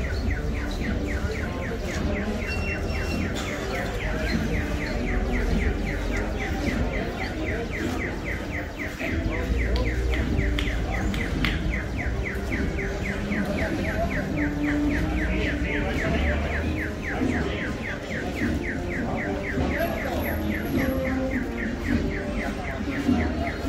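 A fast, even train of high chirps, several a second, runs over steady street noise and stops near the end.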